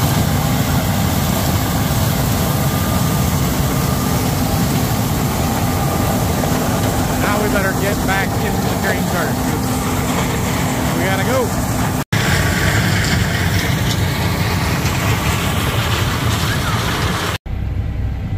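John Deere combine harvesting corn close by: a steady engine drone under a heavy, even rush of header and threshing noise. The sound breaks off for an instant about twelve seconds in and again just before the end.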